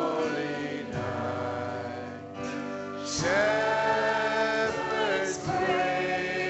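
A live church worship band: a woman sings lead into a microphone over piano, bass guitar and drums, holding a long note from about three seconds in.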